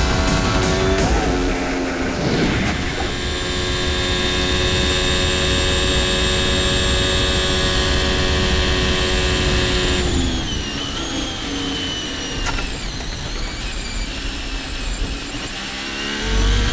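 Onboard sound of a 2022 Formula 1 car's turbocharged V6 engine, held at steady high revs on a straight, then falling in pitch from about ten seconds in as the revs drop through downshifts. Music plays under the first couple of seconds.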